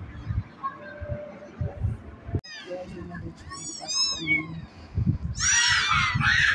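Young kittens mewing with many short, thin, high-pitched cries, one after another. The cries start about halfway in and grow louder and more crowded near the end. Before them there are only low, soft bumps.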